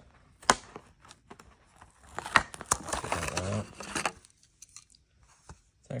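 A Hot Wheels blister pack being torn open by hand: a sharp snap about half a second in, then about two seconds of crackling and tearing of the plastic blister and cardboard card with a few sharp clicks, and a few faint ticks near the end.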